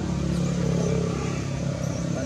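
A motor engine running steadily with a low hum, slightly louder in the middle.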